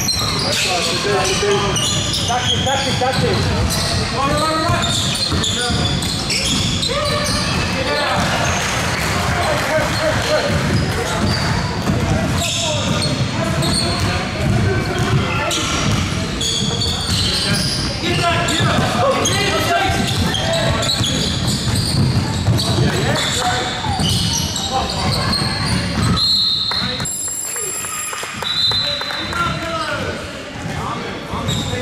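Live basketball game in a large gymnasium: a basketball bouncing on the hardwood court among players' voices calling out, all echoing through the hall.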